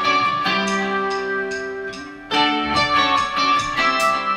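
Electric guitar playing on its own in a break in the band: picked notes in quick succession ring into one another. A louder new chord or note is struck a little past halfway.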